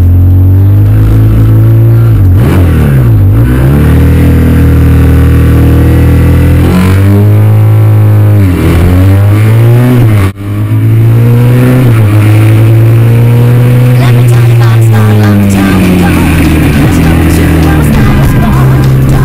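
Triumph parallel-twin motorcycle engine heard from on board, held at steady high revs at the start and then accelerating down the road. Its pitch dips and climbs again several times as it shifts up through the gears. The sound drops out briefly about ten seconds in.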